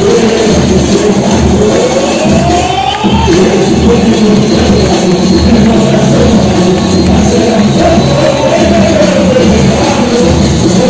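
A samba school's drum section (bateria) playing a samba-enredo live, with a lead singer's voice gliding over a steady, even beat of surdo bass drums and a crowd audible beneath.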